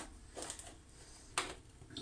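Hand salt grinder filled with coarse salt being twisted: a few short, quiet crunching clicks, the sharpest about one and a half seconds in.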